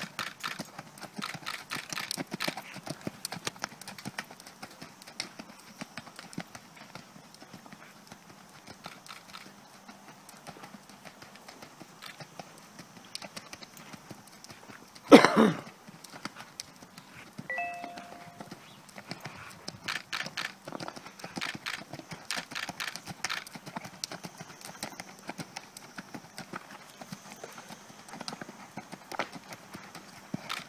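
Andalusian horse's hooves beating on arena sand in a steady trotting rhythm. One loud, short blast of noise comes about halfway through.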